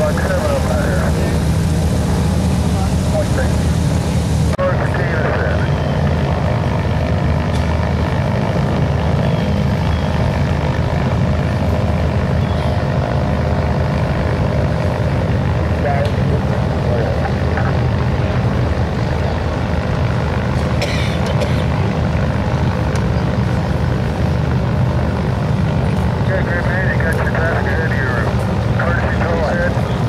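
Republic Seabee amphibian's pusher-propeller piston engine running at low power as the plane taxis on the water, a steady drone, with faint voices in the background.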